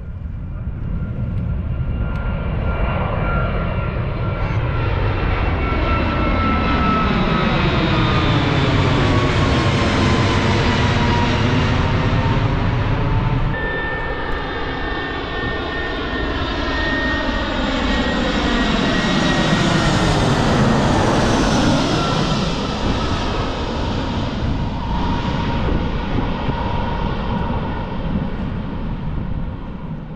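Airliner passing close by with its engine whine falling in pitch as it goes past. About halfway through the sound switches abruptly to a second pass of an airliner, its whine again sliding down.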